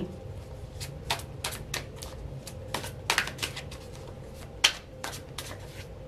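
Tarot cards being shuffled and handled, making an irregular string of soft clicks and snaps, with one sharper snap a little past the middle.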